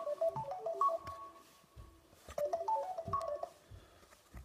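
A short melody of quick stepping notes, played twice, with the sound of a phone ringtone. Soft thuds of footsteps climbing carpeted stairs sound between and under the tune.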